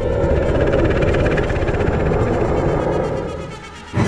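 Loud horror-film sound-design rumble: a dense, grinding noise swell with a low undertone that fades out shortly before a sudden loud hit at the very end.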